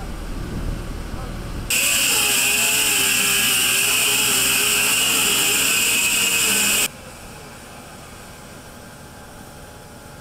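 Sewer repair machinery: a low engine rumble, then about two seconds in a loud steady hissing rush with a wavering whine beneath it, which cuts off abruptly about seven seconds in and leaves a quieter steady hum.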